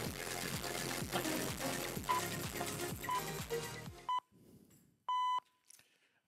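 Instrumental music with a steady beat that cuts off about four seconds in. Three short electronic beeps a second apart lead to a longer final beep, a countdown signalling the start of the 180-second presentation timer.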